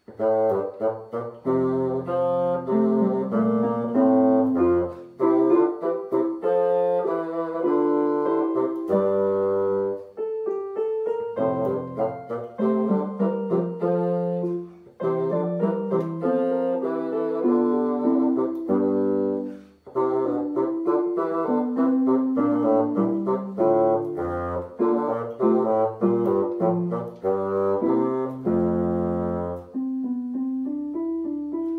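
Bassoon playing a simple graded solo piece with piano accompaniment on a digital keyboard, in short phrases with brief breaks at about 10, 15 and 20 seconds.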